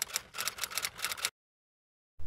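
Typewriter keystroke sound effect: a rapid run of about ten clicks, roughly seven a second, that stops a little over a second in.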